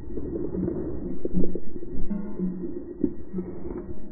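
Rustling and crackling of a person pushing through dry bracken and brush, with plucked-string background music playing underneath.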